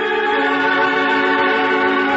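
Electronic organ playing sustained chords, the closing theme music at the end of a radio serial episode; the chord changes right at the start.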